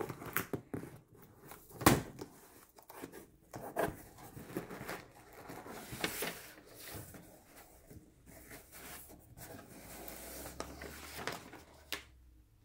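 Cardboard box flaps being pulled open and a paper packing slip handled: scattered rustles and scrapes of cardboard and paper, with a sharper knock about two seconds in.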